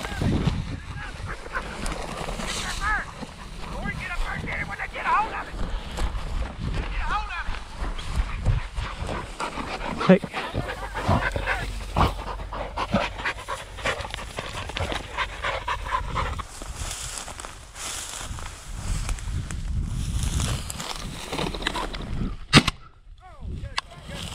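Bird dogs (English setters) panting close by, with dry prairie grass rustling and crunching as they and the walker move through it, over low wind rumble on the microphone.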